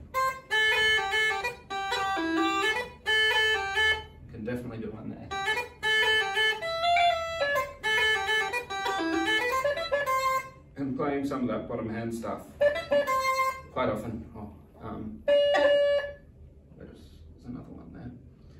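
Uilleann pipes chanter playing short phrases of a slide, with crisp staccato notes and triplets. The phrases stop and restart several times, with gaps of a second or two between them.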